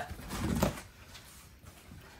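Broccoli heads and a cardboard produce box rustling briefly as hands push into the box, in the first second, then quiet.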